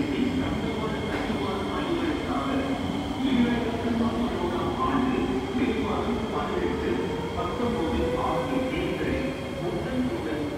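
Kawasaki C751B electric train running through the station without stopping, with a steady rumble of wheels on rail. Over the second half a whine rises slowly in pitch.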